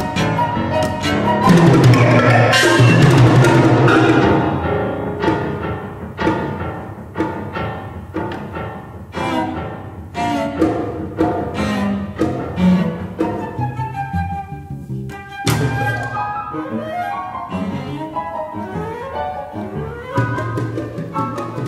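Live chamber ensemble of flute, cello, piano and percussion playing contemporary classical music. A loud swell about two seconds in eases into quieter passages with struck notes, then a sharp stroke about three quarters of the way through and rising runs near the end.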